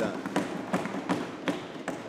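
Sheets of paper rustling close to a desk microphone, with a series of light taps and knocks as notes are shuffled on the lectern.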